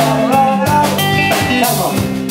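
Live reggae band playing: electric guitars over a steady drum-kit beat, at full volume.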